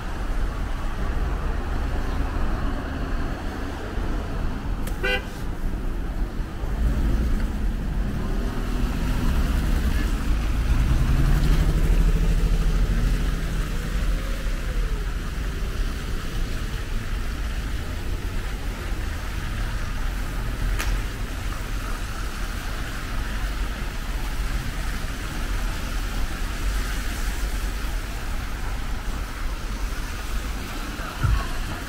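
City street traffic: vehicles passing with engines running over a steady low rumble, one passing vehicle loudest around twelve seconds in, with a brief sharp chirp about five seconds in.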